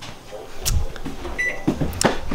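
Microwave oven's keypad beeping twice near the end, short high tones, after a sharp click about two-thirds of a second in.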